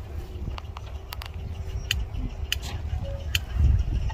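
Low rumble of wind on the microphone, with a few scattered sharp clicks and a swell in the rumble near the end.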